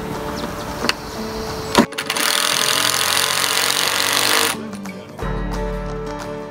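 A few light knocks from handling a wooden beam. At about two seconds a loud, even hiss starts and runs for about two and a half seconds. Then acoustic guitar music begins.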